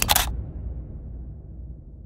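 A camera shutter click sound effect right at the start, over the low rumble of an explosion sound effect fading away.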